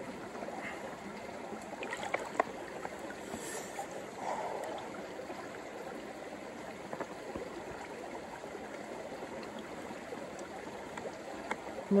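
A small creek flowing steadily, with a few light clicks from hands handling gear about two seconds in.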